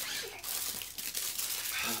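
A torn snack packet crinkling as it is handled and unfolded in the hand, with many small crackles.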